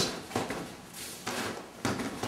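Hand strikes landing on a freestanding punching bag and its padded striking arm: a few short dull hits, the clearest about a third of a second in and near the end.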